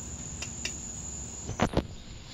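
A steady, high-pitched insect trill, which cuts off near the end. Two thumps come just before it stops.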